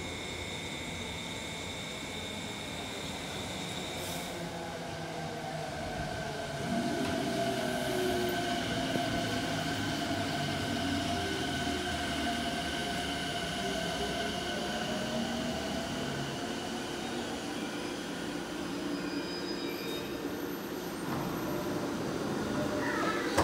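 Electric commuter train pulling into the platform alongside and slowing to a stop. Wheel and running noise grow louder about seven seconds in, with the electric motors' whine rising and then falling in pitch as it brakes.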